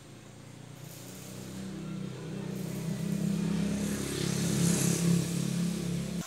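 A motor engine humming steadily and growing louder over several seconds, as if drawing near.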